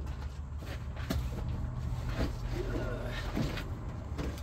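Cardboard boxes of heavy books being moved about, with a sharp knock about a second in and scuffing, over a steady low rumble.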